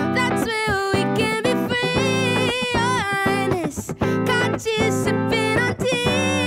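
Live song: a woman singing, her voice sliding and wavering between notes, over chords on a hollow-body electric guitar.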